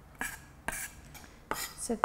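Chef's knife rocking through finely chopped fresh ginger on a bamboo chopping board: three sharp knocks of the blade on the board.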